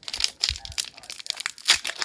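Foil booster pack wrapper crinkling and crackling in the hands as it is torn open at the top, in irregular bursts with the sharpest crackle near the end.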